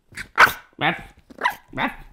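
French bulldog puppy barking at the camera held close to her, a quick run of about five short barks.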